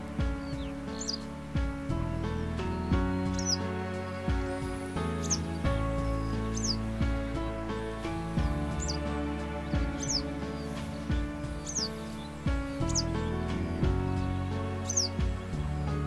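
Background music playing throughout, with a western yellow wagtail's short, high calls over it, repeated roughly once a second.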